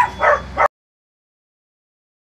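A dog barking twice in quick succession, then the sound cuts off abruptly to dead silence under a second in.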